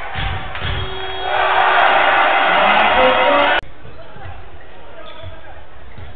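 A basketball dribbled on a hardwood court, then from about a second in a loud swell of arena crowd noise and music that cuts off abruptly at an edit; after it, quieter court sound with the ball bouncing.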